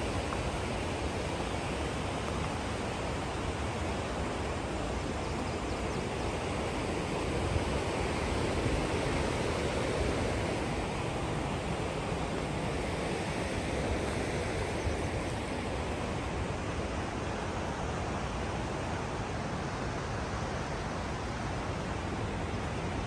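Steady, even rushing noise of the open outdoors, with no distinct events, swelling slightly midway.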